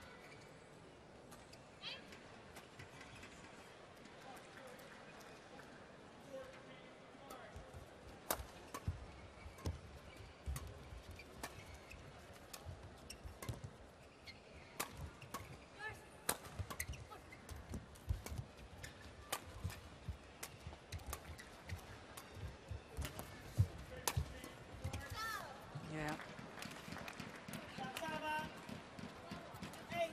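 A long badminton doubles rally: repeated sharp cracks of rackets striking the shuttlecock, with the thuds of players' footwork on the court, starting about eight seconds in and ending about twenty-four seconds in.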